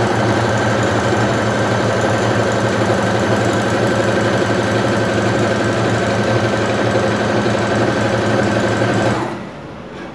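Electric sewing machine running steadily at speed, stitching a hem in blouse fabric, then stopping about a second before the end.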